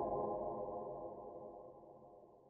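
Fading tail of a logo sting: a held electronic chord ringing on and dying away steadily.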